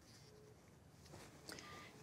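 Near silence, with a faint tap and a short, soft beep from a smartphone about one and a half seconds in as an incoming call is answered.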